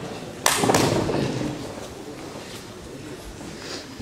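A sharp thump about half a second in, quickly followed by a second smaller knock, ringing briefly in a large hall before settling into low room noise.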